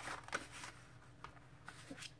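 Faint rustling of paper sheets being handled and slid into place on a tabletop, with a few soft ticks.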